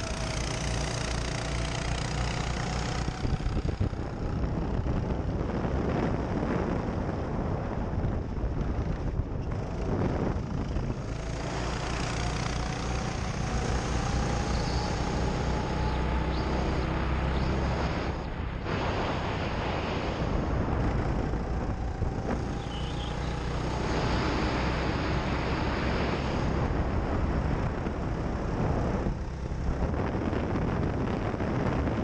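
Go-kart driven hard around a track: its motor's pitch climbs slowly along each straight, then drops back about four times as it slows for the corners. Wind buffets the onboard microphone the whole time.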